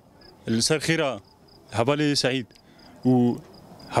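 A man speaking in short phrases, with a high, evenly pulsing insect chirp repeating in the pauses between them.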